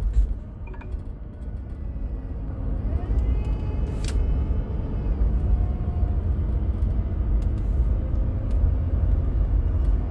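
Steady low road and engine rumble inside a moving car's cabin, with a short click about four seconds in and faint tones in the middle.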